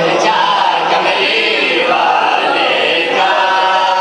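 Several men's voices singing a devotional couplet together, unaccompanied, through a PA; a little after three seconds in, a single steadier held note takes over.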